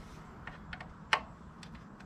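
A few light, irregular clicks and one sharper, louder click a little past the middle, from hand tools and small metal parts being handled during motorcycle rearset installation.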